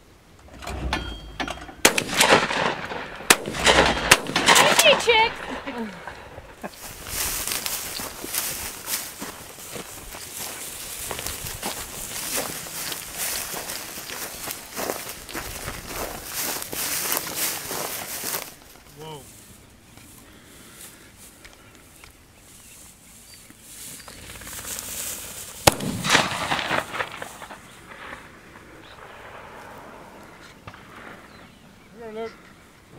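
Shotgun shots a few seconds in, sharp and loud, among people's voices. A long stretch of steady rushing noise follows.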